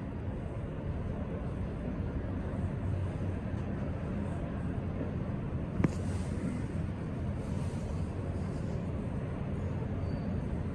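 Otis glass scenic elevator car travelling downward: a steady low rumble and hum from the moving car, with one sharp click about six seconds in.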